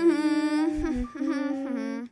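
A voice humming a short tune of a few held notes that step downward in pitch.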